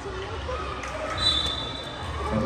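A basketball being dribbled on a hard outdoor court during a game, under spectators' voices, with a brief high steady tone just over a second in.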